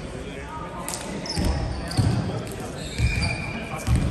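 A volleyball bouncing on a hardwood gym floor, a few dull thuds, with short high squeaks of sneakers on the floor, in a large echoing hall.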